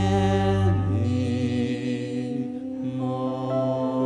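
A woman sings long, held notes in a slow ballad over piano and cello accompaniment. The deep bass notes stop about a second in.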